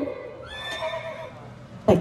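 A short horse whinny, quieter than the singing around it, about half a second in and lasting under a second.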